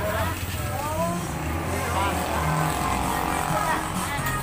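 Indistinct talking between customers and a street vegetable vendor, over the steady low hum of a motor engine running nearby.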